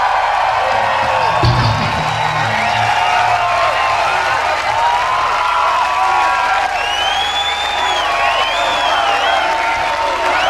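Large festival crowd cheering, screaming and whistling after a song, with many shrill whistles rising and falling through the din. A brief low thump comes about a second and a half in.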